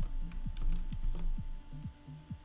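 Computer keyboard keys clicking in quick, irregular strokes while editing code, over quiet background music.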